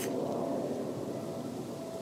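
Steady low background noise with a faint steady hum and no distinct events.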